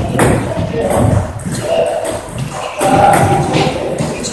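Table tennis rally: the ball makes sharp clicks as it is hit off the rackets and bounces on the table, over indistinct voices and music in the hall.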